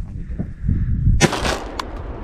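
A single shotgun shot about a second in, fired at a duck sitting on the water among the decoys.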